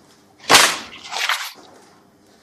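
A thick hardback book slapped down onto a desk about half a second in, then its pages flipped open.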